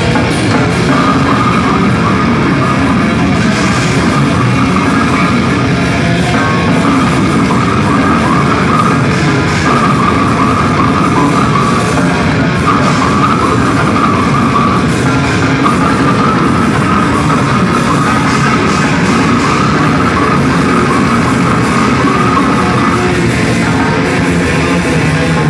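Extreme metal band playing live: heavily distorted electric guitars and a drum kit in a loud, unbroken wall of sound, heard from the audience floor.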